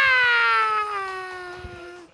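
A person's long, high falsetto howl: one drawn-out vowel that slides slowly down in pitch and fades away, a hooting reaction to a punchline.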